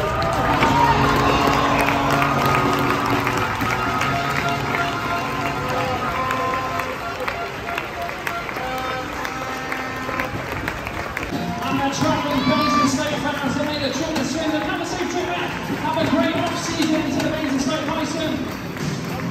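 Music playing over an ice arena's public-address system, with crowd voices and some cheering. The music turns livelier about two-thirds of the way through.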